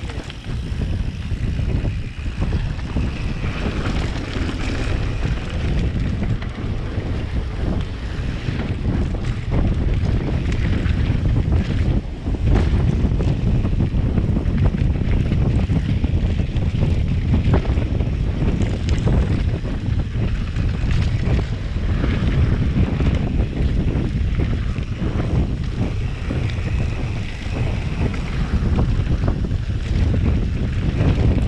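Wind buffeting the bike-mounted camera's microphone as a mountain bike rides fast down a dirt trail, with the steady rumble of the tyres on dirt and frequent clicks and rattles from the bike over bumps.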